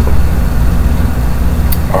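A steady low hum made of several even bass tones, with a brief faint tick near the end.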